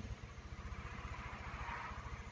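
Ford Everest petrol engine idling, heard faintly from the driver's seat as a steady, even low pulsing. It runs smoothly and quietly; the seller calls it very smooth ("rất là êm").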